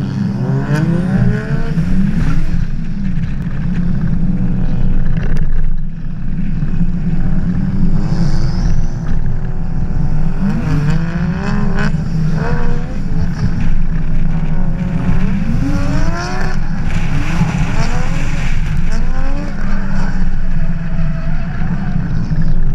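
Engine of a Nissan Laurel C35 drift car under hard driving, revving up and falling back again and again as the throttle is worked through the corners. A heavy steady rush of wind and road noise sits under it, heard from a camera outside the car's window.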